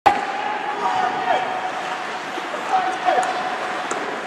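Ice hockey game sound in a rink: a steady murmur of distant voices from the stands and the ice.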